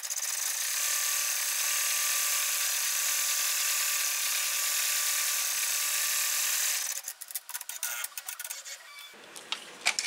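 Ten-needle embroidery machine running a V-stitch around the edges of a hooped towel-and-flannel wipe: a steady, fast stitching rattle that stops abruptly about seven seconds in. A few light clicks follow.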